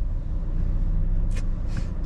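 Car engine idling at a standstill, heard from inside the cabin as a steady low rumble, with two short hissing sounds about one and a half seconds in.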